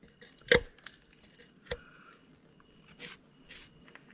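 A few short, light knocks and clicks from handling around a removed engine cylinder head, the loudest about half a second in.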